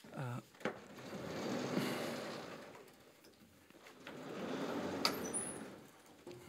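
Sliding blackboard panels being moved in their frame: two long sliding runs, each swelling and fading over about two seconds.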